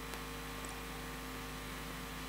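Steady electrical mains hum with many overtones, over a faint hiss, unchanging throughout.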